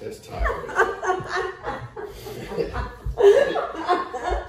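A woman laughing and chuckling in short bursts, with a few dull low thumps.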